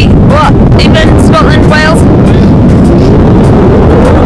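Strong wind buffeting the microphone, a loud, constant roar, with a woman's voice shouting over it in short phrases that are hard to make out.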